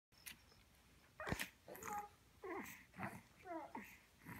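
An infant's short, yelp-like vocal sounds, about five in quick succession with gaps between, each sliding up and down in pitch.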